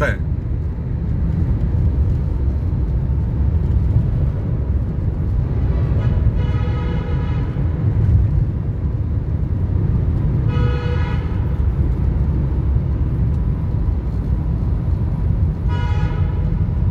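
Steady low road and engine rumble heard from inside a moving car. A jeep's horn honks twice, about six and eleven seconds in, each blast lasting about a second.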